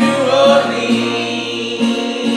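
Acoustic guitar strummed with several voices singing along loosely, one held sung note in the first half second.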